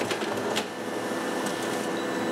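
Canon multifunction printer running as it prints a page and feeds the sheet out into the output tray: a steady mechanical whir with a light click about half a second in.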